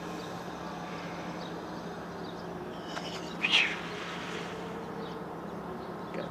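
Steady background hum with low noise, broken once about three and a half seconds in by a short high chirp.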